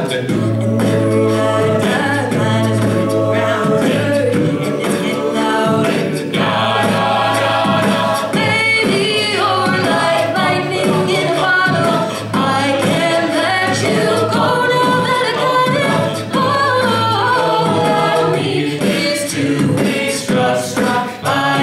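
Mixed a cappella group singing, a female soloist on microphone over backing voices, with beatboxed percussion. The basses hold a low sustained note for most of the stretch and drop it near the end.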